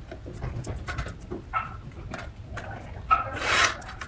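Light clicks and rubbing as rice-roll pieces are pushed into place on a ceramic plate, with one louder rasping scrape about three seconds in.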